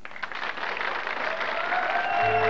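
Studio audience applauding, the clapping swelling gradually; a faint musical tone comes in near the end.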